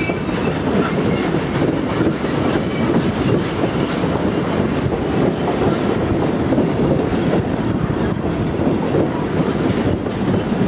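Heritage passenger carriages rolling past at low speed, a steady rumble of wheels on the rails with clickety-clack over the rail joints.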